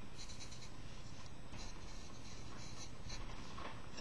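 A marker writing on a large white sheet, in a few groups of short, faint strokes, over a steady low hum.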